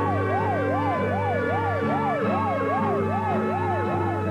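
A fast wailing siren, rising and falling about two and a half times a second, over held music chords and a steady bass note.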